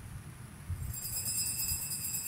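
A faint, high, shimmering jingle of small bells begins about a second in, over a low room rumble.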